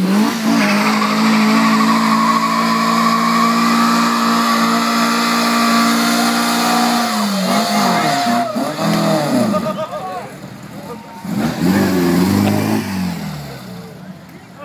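1969 VW Microbus's air-cooled flat-four engine held at high revs for about seven seconds while the rear tyres squeal in a burnout. Then the revs drop and the engine is blipped up and down a few more times.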